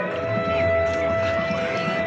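A single long steady musical note, held about three seconds, over the chatter of a large crowd.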